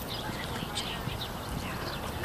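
Hoofbeats of a horse cantering on a dirt arena after clearing a jump, heard faintly through background voices.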